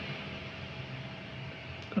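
Steady background room noise with a faint, even machine-like hum, and a small click near the end.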